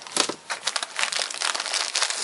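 Continuous crinkling and rustling of a muesli bar's plastic wrapper and the nylon fabric of an Osprey Kestrel 38 hipbelt pocket, as a hand rummages inside and draws a bar out.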